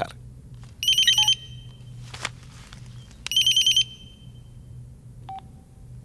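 A phone ringing: two short electronic trilling rings about two and a half seconds apart, followed near the end by a brief faint beep.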